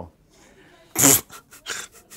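A man's breathy laugh: a sharp burst of breath about a second in, then a few short breathy pulses.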